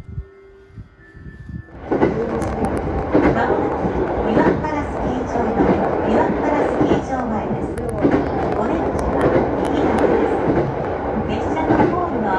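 JR Joetsu Line local train heard from inside the carriage: quiet for about two seconds, then loud, steady running and rail noise sets in as the train moves at speed.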